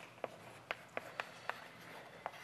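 Chalk writing on a blackboard: about five faint, short, sharp taps and scrapes as the chalk strikes the board.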